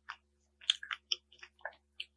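Biting into and chewing a chocolate-coated ice cream bar. The chocolate shell breaks with a quick run of sharp crackles, loudest a little under a second in.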